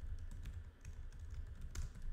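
Typing on a computer keyboard: irregular key clicks as a short phrase is typed, over a steady low rumble.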